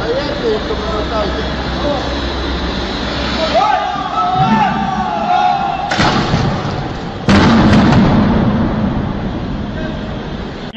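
Voices over a noisy background, then a sudden loud crash about six seconds in and a louder burst of noise about a second later that slowly dies away.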